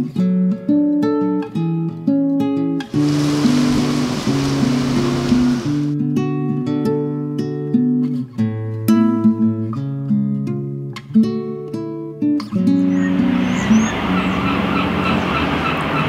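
Acoustic guitar music, single picked notes in a steady melodic run. A brief wash of hiss comes in a few seconds in, and a haze of street noise rises under the guitar near the end.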